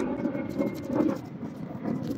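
Soft handling sounds of a plastic Brompton easy wheel being fitted by hand to the folding bike's rear frame: light rubbing with a few faint clicks, the clearest about a second in.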